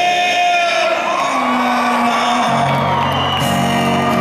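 Live male vocal holding long sung notes over an acoustic guitar, the voice stepping up to a higher held note about a second in, with the strumming filling back in about halfway through.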